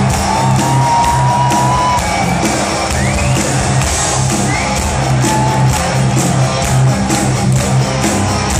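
Live heavy metal band playing with an orchestra, heard from within the audience, with a steady beat and repeating bass notes. Fans cheer and whoop over the music.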